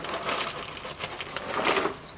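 Cheez-It crackers rattling and sliding in their cardboard box as it is tipped up to pour them into the mouth, then crunching as they are chewed.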